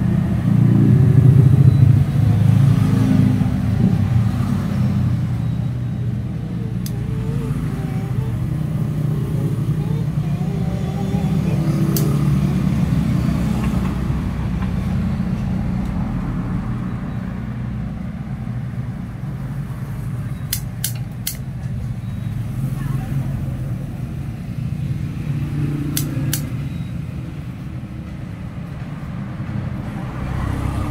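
Steady low rumble of road traffic with indistinct voices in the background, broken by a few short sharp clicks, three of them in quick succession about two-thirds of the way through and two more near the end.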